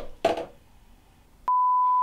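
A steady single-pitch test-tone beep, as played with television colour bars. It starts abruptly with a click about one and a half seconds in.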